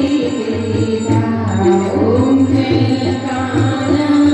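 Hindu devotional aarti hymn sung to music, a continuous chanted melody.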